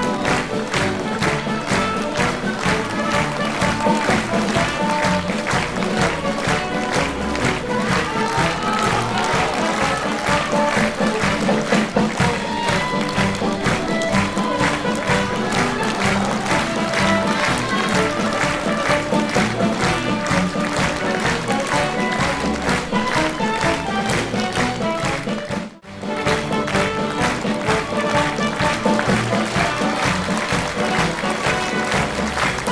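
Live orchestral music playing, with many people clapping over it. The sound drops out for a moment about 26 seconds in, then picks up again.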